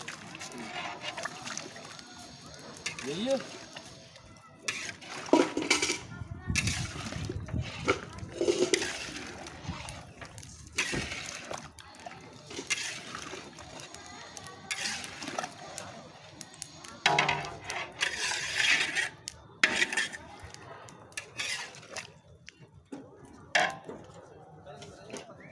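Irregular clanking and scraping of metal in a large iron kadhai: a steel vessel knocks on the rim as meat is tipped in, then a long metal ladle stirs and scrapes the pan. Voices can be heard in the background.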